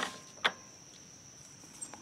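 Cricket chirring as a steady high-pitched drone, with two short sharp clicks in the first half second.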